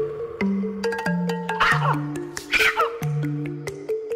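A macaw squawking twice over gentle background music with slowly stepping notes.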